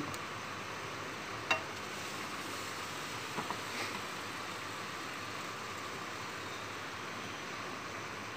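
Faint steady hiss from a stainless steel frying pan over a lit gas burner, with butter just starting to melt in it. There is a single light click about one and a half seconds in.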